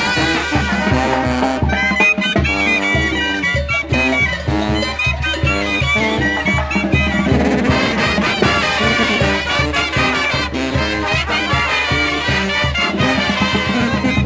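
Mexican brass banda playing live: trumpets carrying the melody over sousaphone bass and a steady drum beat.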